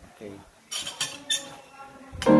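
Metal cutlery clinking against ceramic dishes: three quick, ringing clinks a little under a second in.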